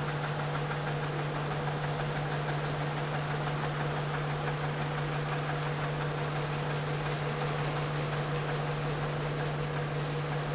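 Earthquake shake table running under a 400 gal test shake: a steady machine hum over a constant noise, unchanging throughout, with no knocks or impacts.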